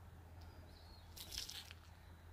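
Quiet outdoor ambience with a low, steady hum. About a second in comes a brief crackling rustle, with a faint thin whistle just before it.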